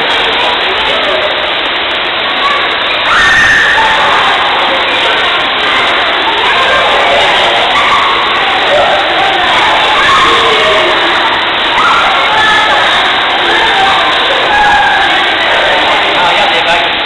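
Many children shouting and calling out at once in a swimming pool, a loud continuous din of overlapping voices.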